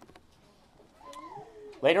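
A young child's brief, faint, high-pitched whine that rises and falls, about a second in.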